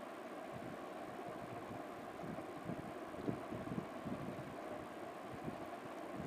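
A few faint, soft taps as a knife cuts down through stiff goja dough onto a metal plate, over a steady low background hiss.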